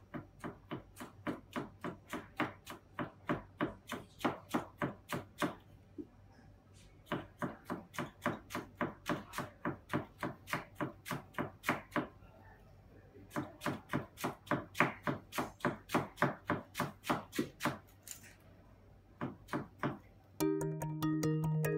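A kitchen knife finely shredding cabbage on a cutting board, each stroke a crisp tap of the blade meeting the board, about three to four a second. The strokes come in three steady runs of about five seconds, with short pauses between them.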